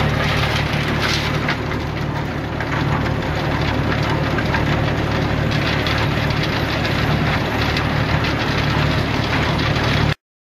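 Hammer mill and its belt conveyor running, carrying crushed ore out of the mill. A steady low machine hum sits under a constant gritty rattle of crushed rock.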